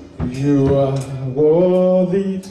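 A man singing a slow worship song into a microphone, holding long notes that slide from one pitch to the next.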